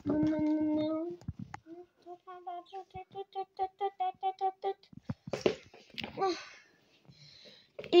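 A child's voice making vocal sound effects in play. It holds one sung note for about a second, then sings a run of short repeated syllables at about four a second, then says a few unclear syllables.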